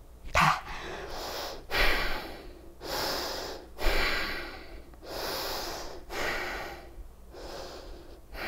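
A woman breathing hard through a strenuous held exercise, about one loud breath a second with a sharp one about half a second in; the strain comes from holding a dumbbell out at arm's length.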